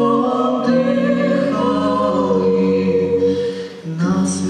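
A six-voice a cappella vocal ensemble singing a Ukrainian folk Christmas carol (koliada) in close harmony, with no instruments. The held chords thin out briefly just before the end as one phrase closes and the next begins.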